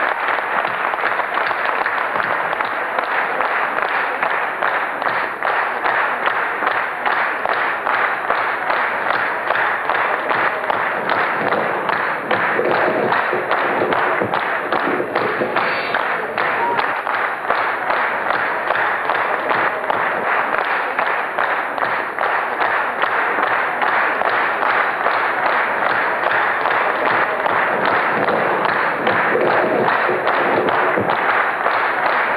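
A large theatre audience applauding steadily, a dense mass of hand claps.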